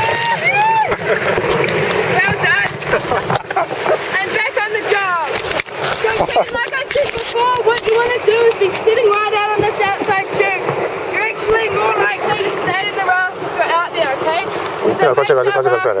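River water rushing and splashing around an inflatable raft in a rapid, with the rafters shrieking and shouting throughout.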